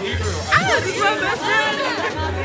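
Excited chatter of a group of people talking and exclaiming over one another, with music playing underneath.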